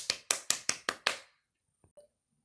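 A run of sharp hand claps, about five a second, ending a little over a second in.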